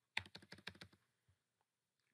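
A quick run of about eight keystrokes typed on a computer keyboard, all within the first second.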